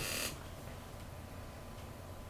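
A paper ballot sheet rustling as it is slid across the table, a brief papery swish right at the start, followed by a faint low steady hum.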